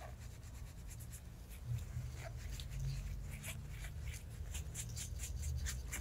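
A small towel rubbed over a toe and toenail by gloved fingers, making a faint run of short scratchy rubbing strokes as loose skin is wiped away after filing.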